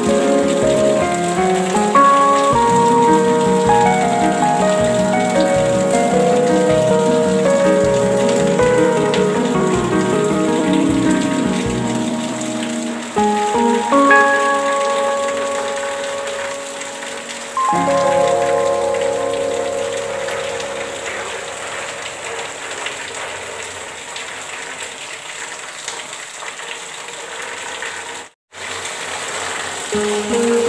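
Steady rain with slow, calm instrumental music of sustained notes played over it. All sound cuts out for a split second near the end.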